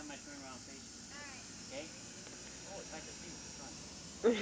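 Faint, distant children's voices, talking and calling in short scattered bursts.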